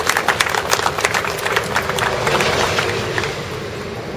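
A small crowd applauding with hand claps, thinning out and dying away about three seconds in.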